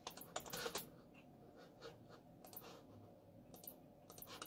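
Faint clicks of computer keys being tapped: a quick run of clicks in the first second, then a few scattered single clicks.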